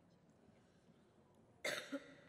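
Faint room tone, then a short, loud cough near the end, followed by a brief second burst.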